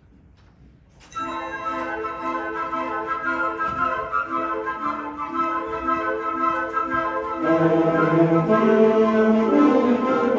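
A student concert band starting a piece: after about a second of quiet hall, the band comes in together on held woodwind and brass chords. About seven seconds in, lower instruments join and it grows louder.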